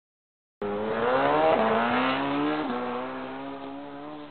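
Motor vehicle engine sound effect accelerating, starting about half a second in, its pitch rising with two short dips like gear changes and slowly getting quieter.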